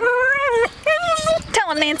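Whippet whining in three high, drawn-out cries, the last one falling in pitch: the eager whine of a dog straining to join the chase and waiting for its turn to run.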